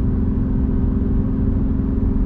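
BMW M2 Competition's twin-turbo inline-six running at a steady, constant drone while cruising, heard from inside the cabin over a low road rumble.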